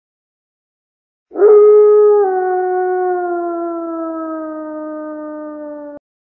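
A wolf howling: one long, loud howl that begins about a second in, drops a little in pitch shortly after it starts, then slides slowly lower as it fades, and cuts off abruptly.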